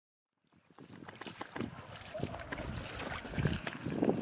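Water splashing as a person wades through shallow lake water, a run of short splashes that fades in about half a second in and grows louder.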